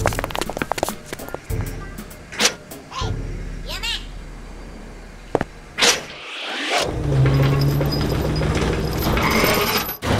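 Cartoon soundtrack: a quick run of sound effects and short wordless character vocal sounds, then a sharp whoosh about six seconds in. After a brief gap, background music with a steady low tone comes in.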